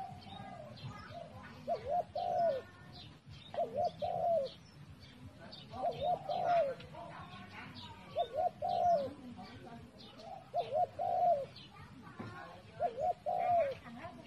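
A dove cooing: a short phrase of two or three low, arching coos repeated about every two seconds, with small birds chirping faintly in the background.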